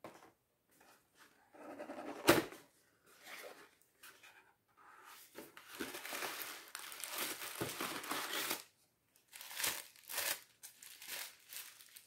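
White gift wrapping being torn and crumpled by hand as a present is unwrapped: irregular crinkling and tearing, with a sharp click about two seconds in and a longer stretch of crinkling in the middle.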